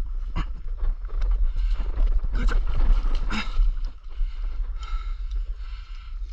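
Stand-up paddle strokes in river water, a splash or knock about once a second, over a steady low rumble of wind on the microphone.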